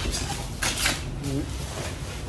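Detachable front grille of a wooden floor-standing loudspeaker being pulled off and handled: two brief rustling scrapes, the second and louder one well under a second in.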